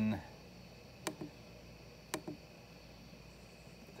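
Two light clicks about a second apart, from the front-panel buttons of an AmHydro IntelliDose dosing controller being pressed to step through its menus.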